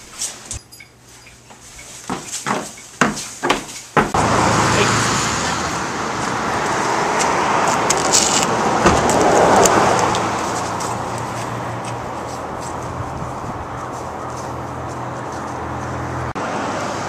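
A few sharp knocks and clicks. Then, from about four seconds in, a loud, steady rush of outdoor noise that swells near the middle and eases off.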